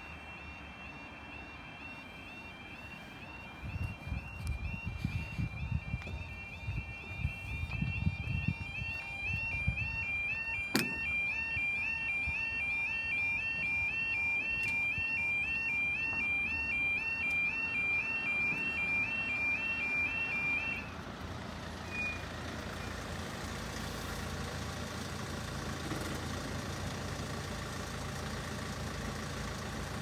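Railway level crossing audible warning: a two-tone electronic alarm alternating steadily between two high pitches while the barriers come down, cutting off suddenly about twenty seconds in. Low rumbling surges sit under it for a few seconds early on, with a single sharp click about eleven seconds in.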